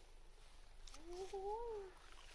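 A person's voice at a distance: one drawn-out call, rising then falling in pitch, about a second in.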